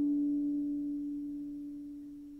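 A single harp note ringing on and slowly fading away, with no new string plucked.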